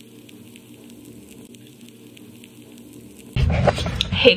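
Faint steady crackling hiss. About three and a half seconds in, a much louder low rumbling sound cuts in.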